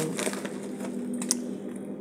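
Creamy pasta sauce simmering in a pan: scattered small pops and clicks, one sharper click a little past halfway, over a steady low hum.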